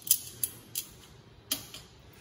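A kitchen knife tapping against a stainless steel sink, knocking peel off the blade: about four sharp ticks at uneven intervals.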